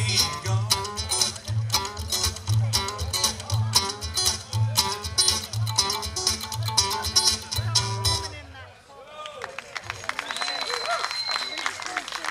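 Live country band of acoustic guitar, electric guitar and upright double bass playing the instrumental close of a song, the bass pulsing steadily under the guitars. The music stops about eight and a half seconds in, leaving voices and light applause.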